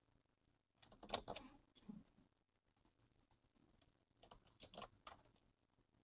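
Faint typing on a computer keyboard, in two short bursts of key clicks: one about a second in, another around four seconds in.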